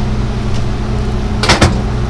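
A steady low hum, with two quick knocks close together about a second and a half in.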